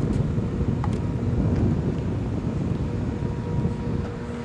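Low, uneven rumble of wind buffeting the microphone outdoors, with a faint steady hum underneath.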